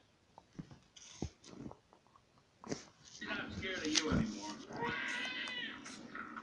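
Film soundtrack playing from a tablet: faint scattered clicks, then from about three seconds in a loud, high, wavering voice-like cry whose pitch bends up and down.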